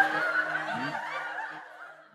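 A man's soft snickering laugh over the last electric guitar note, which rings on and fades steadily away.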